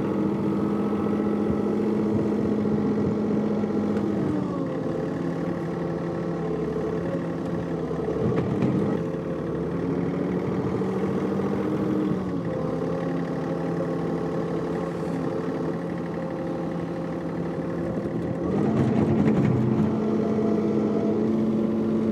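John Deere 3046R compact tractor's diesel engine running steadily while the tractor pushes snow with its loader bucket. The engine note drops about four seconds in and comes back up near the end.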